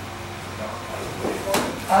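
A single sharp crack about one and a half seconds in: a wooden practice spear (sibat) landing a strike during stick sparring.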